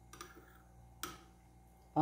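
A metal spoon clicking twice against a bowl while scooping into thick angu: a light click just after the start and a sharper one about a second in.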